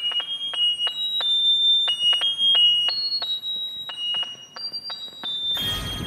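Handheld electronic alarm playing a high-pitched beeping melody, one clipped note after another, sounded as a wake-up call. A loud noisy burst comes in near the end.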